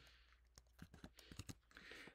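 Near silence with a few faint, scattered clicks in the first half or so.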